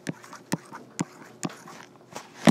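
Stylus tapping on a tablet touchscreen while digits are written: four sharp taps, about two a second.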